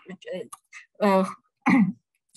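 Speech only: a lecturer's hesitant "uh, uh" fillers, short vocal sounds with pauses between them.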